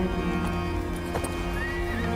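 Film soundtrack: music with low held notes, with horses heard over it and a short call near the end.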